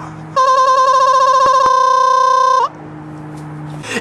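A loud, electronic-sounding held tone from digitally edited remix audio. Its pitch wobbles at first, then holds flat, and it cuts off abruptly about two and a half seconds in. A quieter low, steady hum fills the gaps.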